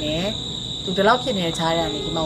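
Crickets or similar insects chirring in one steady, high-pitched drone beneath a woman's speech.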